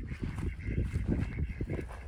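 A small flock of ducks quacking, with wind buffeting the microphone.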